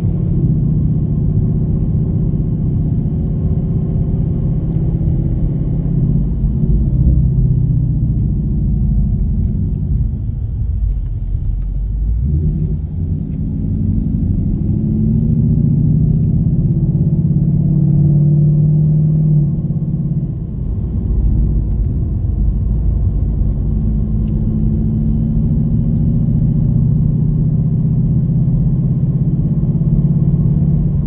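Ford Mustang GT's V8 engine heard from inside the cabin while cruising: a steady low drone that eases off about ten seconds in, then climbs in pitch as the car picks up speed, with another brief dip about twenty seconds in.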